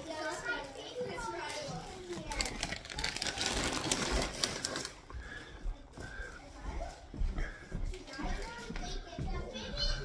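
Background chatter of several voices, adults and children, talking in a small room, with a stretch of rustling noise in the middle.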